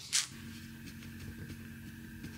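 A brief rustle of a fabric blanket being grabbed just after the start, then a faint steady hum with a thin high whine underneath.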